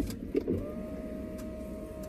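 A car's power window motor running with a steady whine for about two and a half seconds, stopping with a low thud.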